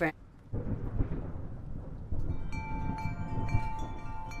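Thunder rumbling low and rolling, starting about half a second in. About halfway through, wind chimes begin ringing over it with several overlapping tones.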